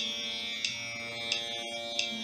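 Tanpura drone sounding on its own, a steady buzzing chord of the tonic with a crisp pluck about every two-thirds of a second.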